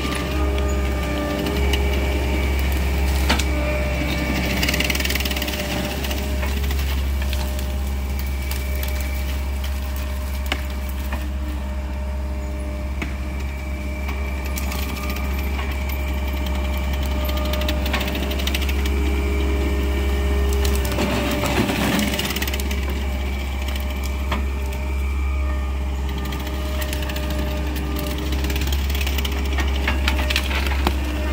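ASV RT-120 Forestry tracked loader's diesel engine running hard while its Fecon Bullhog forestry mulcher head spins, with scattered sharp cracks and snaps of wood and brush being chewed up.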